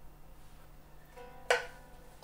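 A single plectrum stroke across the strings of a Germanic round lyre, about one and a half seconds in: short and sharp, ringing off quickly, with faint ringing notes just before it.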